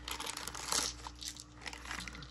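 Thin clear plastic bag crinkling in irregular crackles as hands handle it and take out a set of dice.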